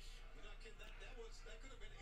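Faint, muffled speech in the background, with a steady low electrical hum underneath.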